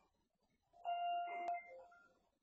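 An electronic chime: one steady pitched tone lasting about a second, ending on a short lower note, with a sharp click partway through.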